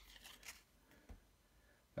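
Near silence, with faint handling of football trading cards: a light rustle in the first half second and a soft tap about a second in.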